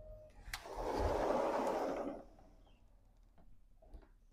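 Sliding glass patio door slid shut along its track: a click, then about a second and a half of rolling rumble, and a light knock near the end.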